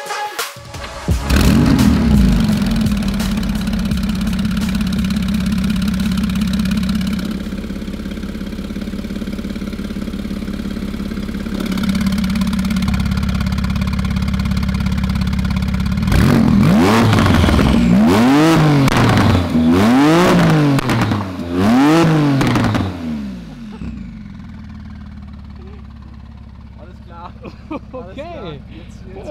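A 9ff-tuned Porsche 991.2 911 Turbo S, its twin-turbo flat-six breathing through an aftermarket exhaust, starts about a second in and settles into a steady idle. About halfway through it is revved in several short blips that rise and fall in pitch, then drops back to a quieter idle.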